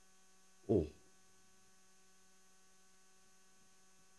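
A man's single spoken word, then a pause holding only a faint, steady electrical hum from the sound system.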